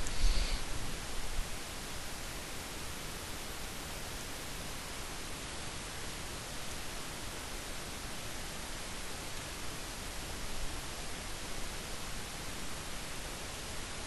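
Steady, even hiss: the recording's background noise from the microphone, with no other distinct sound.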